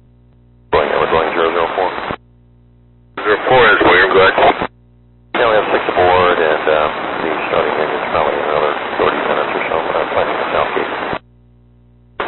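Two-way radio traffic: three transmissions of speech, each cutting in and out abruptly with a thin, narrow sound. A low steady hum fills the gaps between them.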